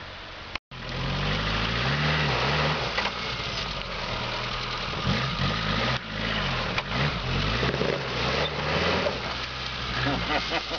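Suzuki Samurai engine pulling under load as the off-roader crawls up a steep hillside, its revs rising and falling again and again. It cuts in after a brief dropout about half a second in.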